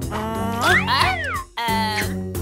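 A cartoon character's high, squeaky vocal sound, rising then falling in pitch like a meow, followed by a short held note, over light background music.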